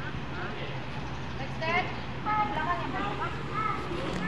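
Indistinct background chatter of several fairly high-pitched voices over a steady low hum.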